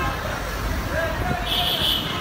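Street noise of a marching crowd beside traffic: a steady low rumble of vehicles under indistinct voices, with a short shrill tone near the end.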